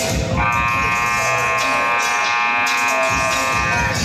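Basketball scoreboard buzzer sounding one long steady blast of about three and a half seconds, starting a moment in and cutting off just before the end, as the game clock runs out to zero.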